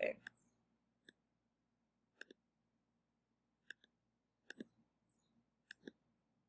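Faint clicks of a computer mouse: a couple of single clicks, then quick pairs of clicks about a second or so apart, as text is selected and its font and size are changed.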